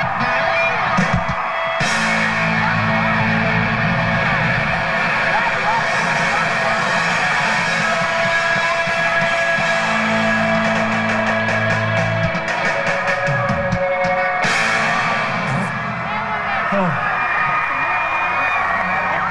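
A live rock band on stage between songs: loose electric guitar and bass notes ring out with a few drum hits, over shouting crowd voices.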